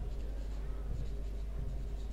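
Marker pen writing on a whiteboard: a run of short, faint, high stroke sounds as the letters are drawn, over a steady low hum.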